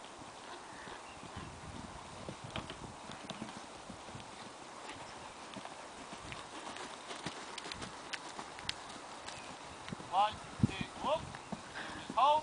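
Faint hoofbeats of a pony cantering on an outdoor arena surface, with a voice heard briefly near the end.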